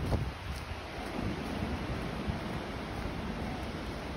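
Wind buffeting the microphone in uneven gusts, a low rumble with no steady tone.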